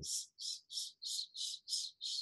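A man hissing a string of short /s/ sounds, about three a second, with the tongue pulled back behind the gum ridge so each hiss carries a thin, high whistle: the whistly or strident S of that kind of lisp.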